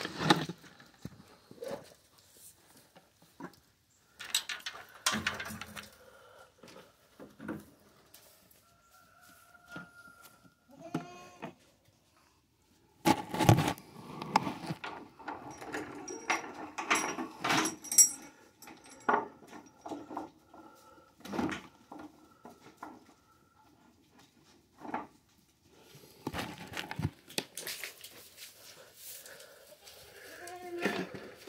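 Scattered knocks, clatter and rustling from feed and gear being handled in a wooden goat shed, busiest about halfway through, with a goat bleating faintly now and then.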